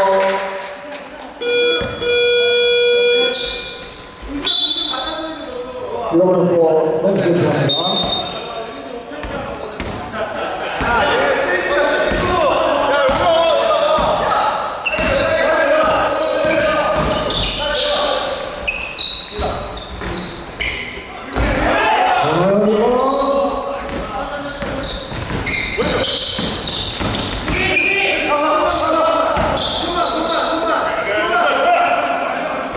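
Basketball being dribbled on a hardwood gym court, with players' shouts and calls in the large hall. An electronic buzzer sounds for about a second and a half near the start.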